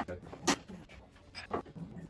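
A person's short breathy sounds, twice, about a second apart, over a quiet room.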